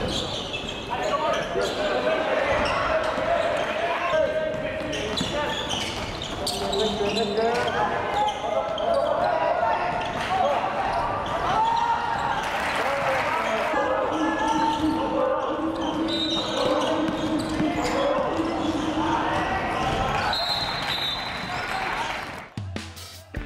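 Live basketball game sound in a large gymnasium: several voices shouting and calling continuously from players and the bench, with the ball bouncing on the hardwood floor now and then.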